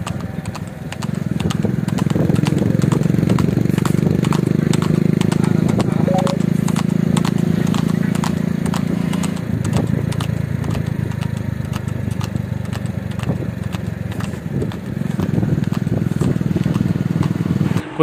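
Hooves of a Sindhi mare trotting on a tarmac road while she pulls a two-wheeled cart, a steady clip-clop. Under it runs the steady hum of an engine, which drops in pitch about halfway through.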